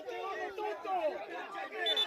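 Several voices talking over one another: chatter.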